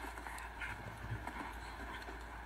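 Faint hoofbeats of a show-jumping horse cantering on the arena's sand footing, over a steady low hum.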